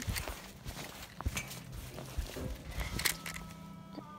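Faint scattered scuffs and taps of a phone and toy being handled, over a low steady hum.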